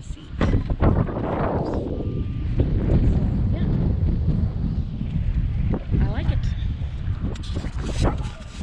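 Wind buffeting the microphone, a steady low rumble with some scattered knocks.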